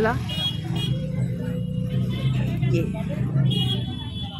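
A low, steady engine hum, with voices in the background.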